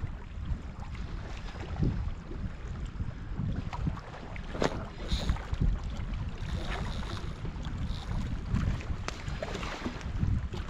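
Wind buffeting the microphone in an uneven low rumble, over the wash of small waves on a rocky shore, with a few short sharp sounds.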